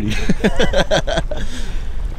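Men laughing in quick repeated bursts through the first second or so, then trailing off. A steady low wind rumble on the microphone runs underneath.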